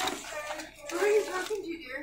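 Crinkling of a thin plastic (CPE) packaging bag as it is handled, with a faint voice partway through.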